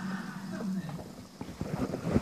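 A person laughing, followed by a few soft knocks and rustles.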